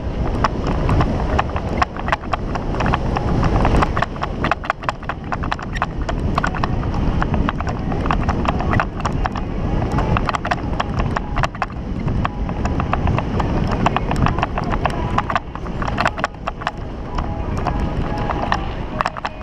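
Mountain bike rattling over a rough, stony dirt track: a constant low rumble of tyres and wind on the camera microphone, broken by dense irregular clicks and knocks as the frame and camera mount are jolted by the ruts and stones.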